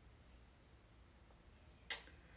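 Near silence: quiet room tone, broken near the end by one brief, sharp sound that fades quickly.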